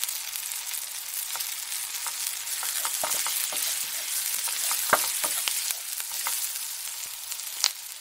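Burgers and hot dogs sizzling on a hot grill: a steady hiss with scattered crackling pops.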